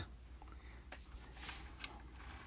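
Vernier Go Direct Sensor Cart pushed a short way on its wheels: a faint rolling hiss that swells and fades a little past a second in. A couple of light clicks come before and after it.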